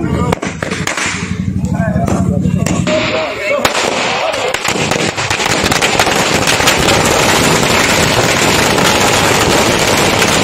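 Firecrackers and ground fountain fireworks going off in rapid crackling, with voices calling out over the first few seconds. About four seconds in, the crackling thickens into a dense, continuous barrage.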